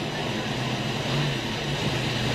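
Stock car's V8 engine running steadily at low revs, heard through the in-car microphone inside the cockpit.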